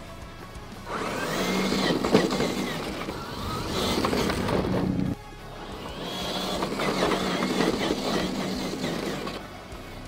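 Electric motor and gears of a 1/10-scale RC crawler whining as it drives over dirt and rocks, with gravel crunching under the tyres. It comes in two stretches of about four seconds, the first cut off abruptly about five seconds in.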